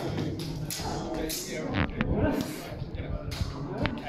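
A rapier fencing exchange on a sports-hall floor: a quick run of thumps and sharp knocks from fast footwork and contact, with a couple of brief squeaks, over the voices and echo of a busy hall.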